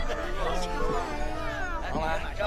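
Spoken dialogue over background music.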